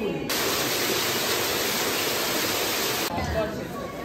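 A loud, steady rushing hiss that starts abruptly just after the start and cuts off abruptly about three seconds in.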